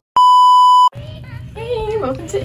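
Colour-bars test-pattern tone: one loud, steady beep at a single fixed pitch, lasting under a second and cutting off suddenly. A voice follows.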